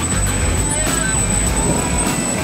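Bottle conveyor running steadily under power: the chain conveyor and its drive make a continuous mechanical rumble with a thin, steady high whine over it.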